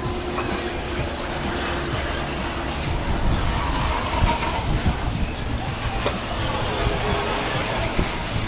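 Radio-controlled off-road racing cars running around a dirt track, a steady mechanical din with faint motor whines that come and go.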